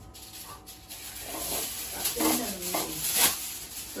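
Aluminium foil being handled, torn and crinkled by hand, a dry crackling rustle that grows louder through the second half. It is the foil being readied to cover a flan mould against water.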